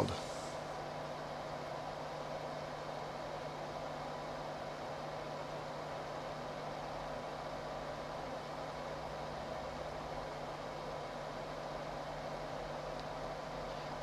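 Steady background hiss with a faint constant hum, the room noise of a microphone during a pause. There are no clicks or other events.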